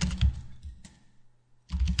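Keystrokes on a computer keyboard: a quick run of clicks in the first second, a pause, then another short flurry near the end.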